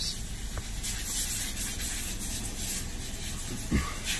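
Steady hiss and low rumble of background noise inside a stopped car's cabin.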